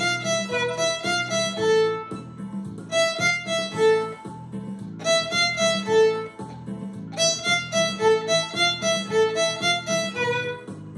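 Solo violin bowed in short, quick notes, playing an energetic beginner tune in phrases of about two seconds with brief dips between them.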